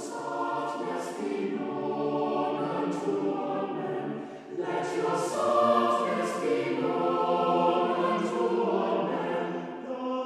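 Church choir singing an anthem in several parts, with clear sung consonants and a short break between phrases about four and a half seconds in.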